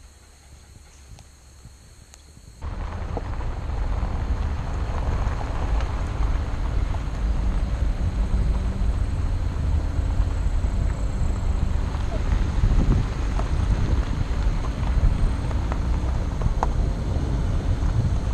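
Wind on the microphone of a camera mounted on a moving car's hood, with the car's road noise on a gravel road under it. It starts suddenly about two and a half seconds in, a loud, deep, steady rumble with occasional small ticks. Before that there is only faint outdoor background.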